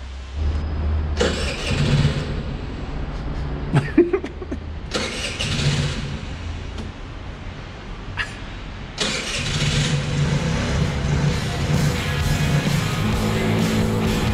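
50 cc scooter engine running and being revved in short surges. Rock music comes in about nine seconds in.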